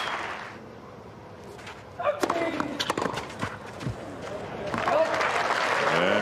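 Tennis ball struck by rackets in a clay-court rally: a few sharp hits about a second apart, starting about two seconds in. The crowd noise fades out at the start and swells again near the end.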